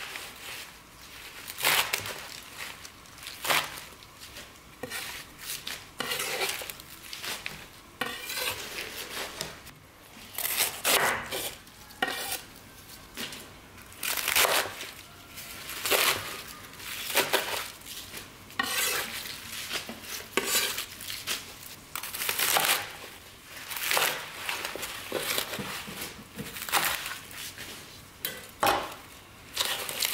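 Kitchen knife chopping through crisp young radish and cabbage stalks on a wooden cutting board, each cut a crunchy slice ending in a knock on the board, about one every one to two seconds.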